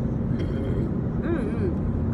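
Steady low road and engine rumble inside the cabin of a moving car, with faint short vocal sounds from the driver about half a second in and again a little later.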